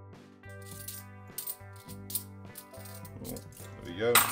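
Fifty-pence coins clinking and rattling in quick succession as a stack of them is thumbed through in the hand, sped up, over background music.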